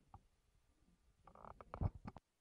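Handling noise on a handheld microphone: soft rubbing and a few knocks in the second half, the loudest a thump near the end.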